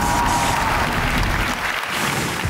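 Studio audience applauding steadily, with show music underneath.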